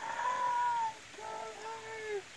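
High-pitched, drawn-out human laughter: two long held notes of about a second each, the first falling slightly at its end.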